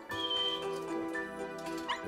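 Golden retriever puppies whining, with a thin high whine near the start, over sustained background music chords.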